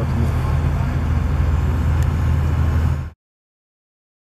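Steady low engine-like hum that cuts off abruptly about three seconds in.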